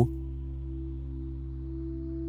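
Soft ambient background music: a steady drone of several held low tones, with a higher held tone joining near the end.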